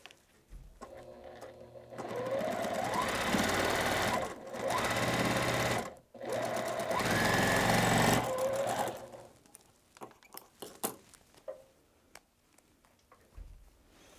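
Juki sewing machine stitching a seam through quilt-block fabric: the motor speeds up with a rising whine and runs in three bursts with short pauses, winding down about eight seconds in. A few light clicks and taps follow.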